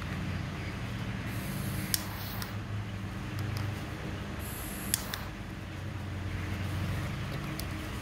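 Butane jet torch lighter fired twice, each time a short hiss of gas with a sharp ignition click, used to burn and seal a cut end of polyester sewing thread. A steady low hum sits underneath.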